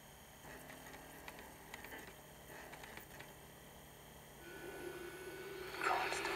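DVD menu intro audio heard faintly through a TV speaker: a few soft clicks, then a steady low drone comes in past the middle and swells suddenly into a loud whoosh just before the end as the menu's logo animation begins.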